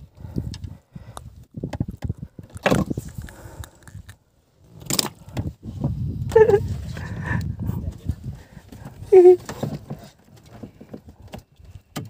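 Irregular knocks and clatter of fishing gear being handled in a small wooden boat, with low rumbling gusts of wind on the microphone. Two short falling tones come about halfway through and again near the end.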